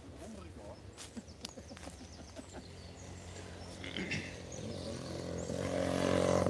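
A vehicle engine approaching, its low steady hum growing louder over the last second or so, with a single cough about four seconds in.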